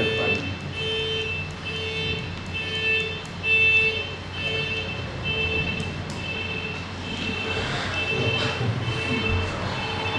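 Electronic beeper sounding a steady, evenly repeated beep, about two beeps a second at an unchanging pitch.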